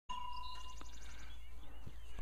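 Small birds chirping in the open, with a quick high trill about half a second in, over a low steady rumble. A thin steady tone sounds for most of the first second.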